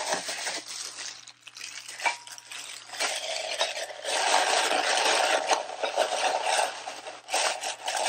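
Paper and cardboard packaging rustling and scraping as it is handled, thinner at first and heavier from about halfway through, with a few small clicks.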